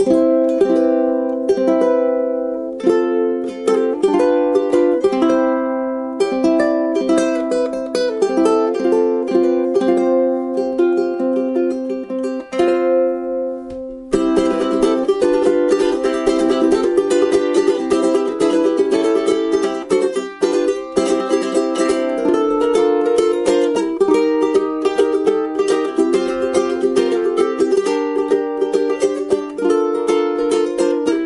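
Mahimahi MT-87G tenor ukulele with a solid mahogany body and Aquila Nylgut strings, played fingerstyle: single plucked notes and ringing chords. About 14 seconds in the playing turns denser and busier.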